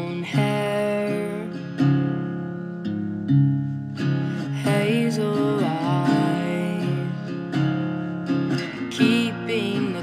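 Acoustic guitar strumming chords in a slow song intro, each chord change marked by a fresh strum about every second.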